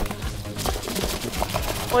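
Background music with rapid, irregular clicking or rattling through it.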